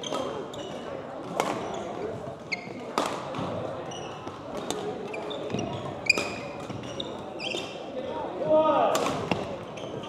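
Badminton rally: sharp racket strikes on the shuttlecock at irregular intervals, about every one to three seconds, among short high-pitched squeaks of shoes on the court floor.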